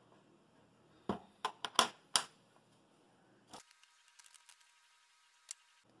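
A few short, light clicks and taps in quick succession as hands handle small 3D-printer parts on a workbench.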